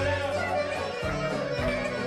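Greek folk song at karaoke through a PA: a backing track with a wavering lead melody over changing bass notes, with men's voices singing along.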